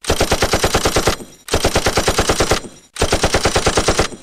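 Automatic rifle fire in three long bursts of rapid, evenly spaced shots, about eight to ten a second, with short pauses between bursts.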